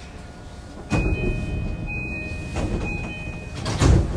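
Yokohama Line commuter train running, heard from inside: a loud low rumble that jumps up suddenly about a second in, with a steady high whine for a couple of seconds and a loud surge near the end.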